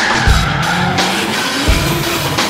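Drift car's tyres squealing as it slides sideways, with a long squeal in the first second, mixed with music.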